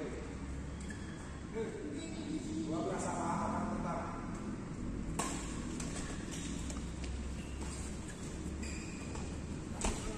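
Badminton rackets hitting a shuttlecock during a rally, heard as a few sharp cracks; the strongest comes about five seconds in and another near the end. Voices talk in the background.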